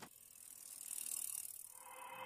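Bicycle freewheel ratchet clicking faintly, growing louder through the first second.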